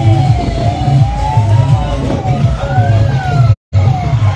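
Sliding siren-like electronic tones, many short falling sweeps and one long rise and fall, over a pulsing low rhythm; the sound cuts out briefly near the end.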